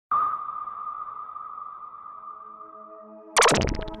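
Electronic intro sound design: a synthesized ping that starts sharply and rings on, slowly fading, over a held synth chord, then a loud whoosh-hit about three and a half seconds in.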